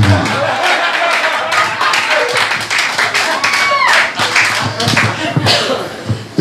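Small club audience laughing and clapping after a punchline, with voices calling out among the claps.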